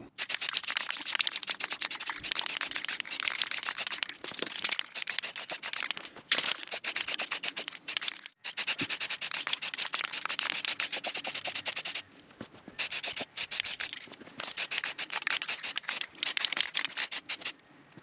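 Aerosol spray-paint can spraying in a fast run of short hissing bursts, with brief breaks about eight seconds in and again about twelve seconds in.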